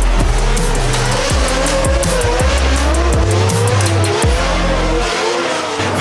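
A drift car sliding sideways: its tyres squeal and its engine revs in a pitch that wavers up and down. It is mixed with music that has a deep, stepping bass line and a beat.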